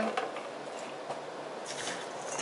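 Faint soft rustling and squishing of gloved hands pressing a crumbly vanilla-wafer and butter crust mixture into a springform pan, with a brief hiss near the end.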